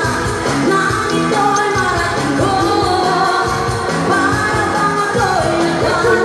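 Amplified pop song with a woman singing live into a handheld microphone over a recorded backing track, played through a PA system.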